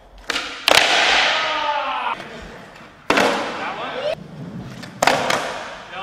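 Skateboard tricks on smooth concrete: a few sharp clacks of the board popping and landing, about 0.7, 3 and 5 seconds in, each followed by the hiss of the wheels rolling and fading, with echo.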